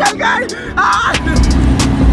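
Lamborghini Huracán's V10 engine idling: a steady low rumble that sets in just over a second in, after brief voice-like sounds at the start.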